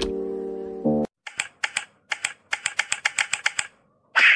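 A held music chord fades out over the first second with keyboard typing clicks over it. It is followed by a quick run of separate computer-keyboard keystrokes, like a typing sound effect, which stops shortly before the end.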